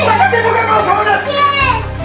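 A loud, high-pitched voice speaking over background music.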